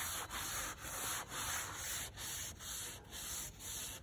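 Hand sanding with sandpaper on the mahogany-veneered key cover of a piano, stripping the old black finish. Steady back-and-forth strokes, about two a second.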